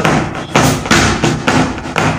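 Hands beating a quick, uneven run of thumps on a desk, used as a drum to keep time for a sung qaseeda.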